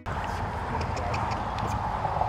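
A horse cantering on arena sand: faint hoofbeats over a steady rushing outdoor noise.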